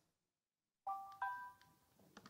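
A two-note electronic computer chime about a second in, the second note higher than the first, ringing out briefly. It is the laptop's system alert sound.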